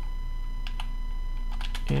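Computer keyboard typing: a couple of keystrokes about two-thirds of a second in, then a quicker run of keystrokes near the end.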